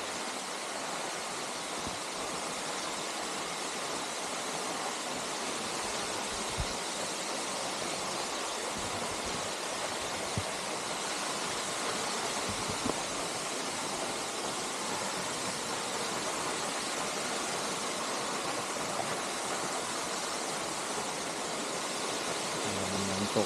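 Waterfall: water falling and rushing in a steady, unbroken hiss, with a few faint clicks over it.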